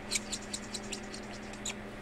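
Marker pen scratching on paper in short quick strokes, several a second, as stars on a chart are coloured in.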